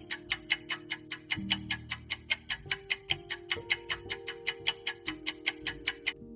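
A quiz countdown timer's clock-tick sound effect, ticking steadily about four times a second over soft sustained background music chords. The ticking stops at the very end as the countdown reaches zero.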